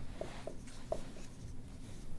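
Dry-erase marker drawing on a whiteboard: faint scratching with three short squeaks of the tip in the first second.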